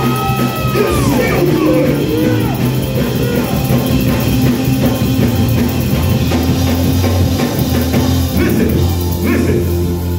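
Live church band music with a drum kit and steady bass notes, with voices over it.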